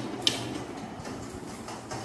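A switch clicks once about a quarter second in, then a room fan's steady running hum slowly fades as it winds down after being switched off.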